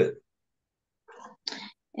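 Two short breathy noises from a person at a video-call microphone, a faint one about a second in and a sharper one just after.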